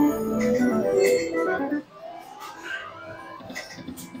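Huff N' More Puff video slot machine playing its electronic reel-spin jingle: a loud run of steady synth notes for nearly two seconds, then it drops off suddenly to quieter tones with a short rising glide.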